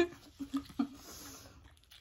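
Close-up mouth sounds of people eating and chewing, with two short vocal sounds in the first second.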